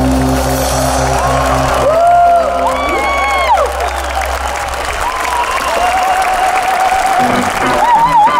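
Rock band's last chord ringing out and stopping about two seconds in, followed by a large crowd cheering and applauding with whoops and shouts. Near the end the band starts playing again.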